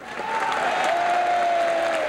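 Members of Congress in the House chamber giving a steady, loud ovation to welcome the arriving president. A single long held note sounds over the clapping, falling slightly in pitch.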